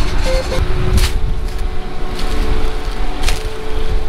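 John Deere combine running with a steady hum, under heavy wind buffeting on the microphone, with a single knock about a second in.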